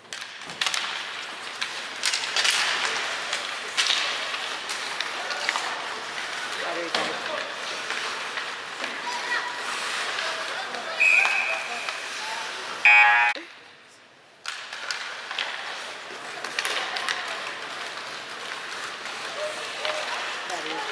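Ice hockey play in an echoing rink: skates, sticks and puck clattering amid shouting voices. A short high tone sounds about 11 seconds in, then a brief loud buzz about 13 seconds in, followed by a second of near silence.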